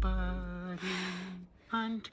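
The beat's last bass note dies away in the first half-second under a man's voice holding a low note, then a breathy gasp comes about a second in.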